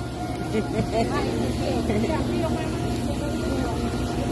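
Background chatter of several people talking at once, over a steady low rumble.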